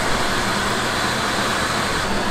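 Steady rushing of turbulent water pouring out of a hydroelectric dam's outlets while the dam is generating: an even, unbroken wash of noise.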